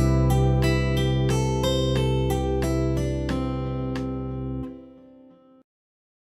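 Guitar playing a C major pentatonic line, about three notes a second, over a sustained C major 7 chord, giving a Cmaj9(13) sound. The chord drops away about four and a half seconds in, and the last note rings faintly before cutting off.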